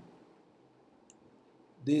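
Quiet room tone with a single faint, short click about a second in, then a man's voice starting near the end.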